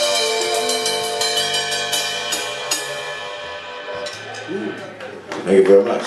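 A blues band ends a song: harmonica holds a long final note over electric guitar, with a quick run of cymbal and drum hits that rings off and dies away about halfway through. Near the end a man's voice comes in loudly over the microphone.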